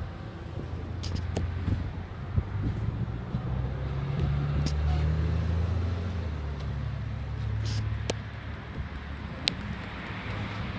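A car engine's low rumble, growing louder for a few seconds around the middle, with a few light clicks.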